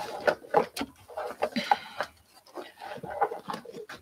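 Fabric rustling and irregular soft knocks as a quilt top and loose batting are pushed and shifted around a sewing machine close to the microphone.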